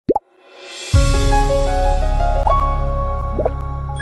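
Logo intro sting: two quick rising pops, a swelling rush of noise, then a deep hit about a second in that opens a sustained synthesized chord, with two short upward swooping blips over it as it slowly fades.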